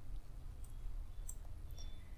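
A few faint, sharp clicks over a low steady hum.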